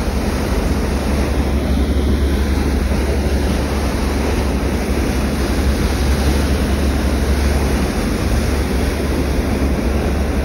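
The Viola Desmond passenger ferry under way: a steady, loud, deep rumble with the rush of its churning wake, and wind on the microphone.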